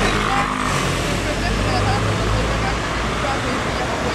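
Indistinct voices over a loud, steady low rumble of outdoor background noise.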